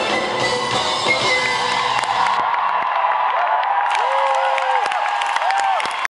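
Live concert music, amplified in a large hall, thinning out after about two seconds as the audience cheers and whoops over it.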